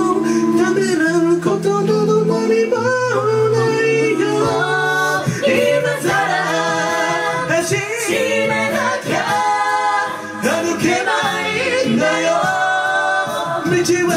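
A cappella vocal group of men and women singing through microphones: several harmony voices over a sung bass line that steps between held low notes.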